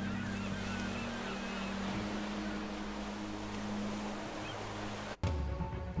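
Stock sound-effect track of ocean surf with seagulls calling, under a soft, held music chord. About five seconds in it cuts off abruptly to a different, louder track.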